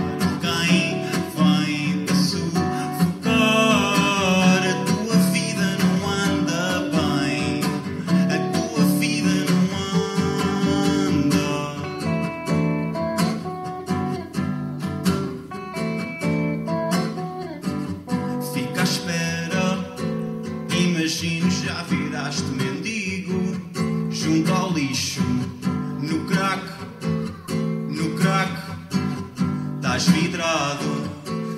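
Acoustic guitar music, strummed and plucked, in an instrumental stretch of a song.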